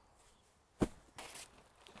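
Quiet handling noise of gear being pulled out of a cluttered shed: one sharp knock just under a second in, then soft rustling of fabric.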